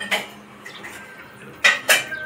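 Two short clinks, a lighter one at the start and a louder one near the end, like small metal or glass objects knocking together.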